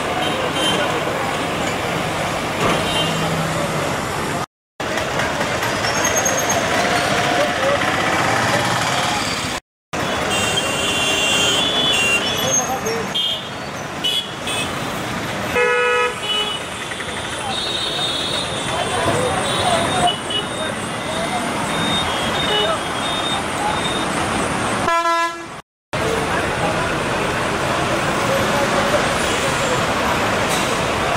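Busy bus-stand ambience: vehicle engines running, horns honking several times and a steady murmur of voices. Three short silent breaks split it into separate stretches.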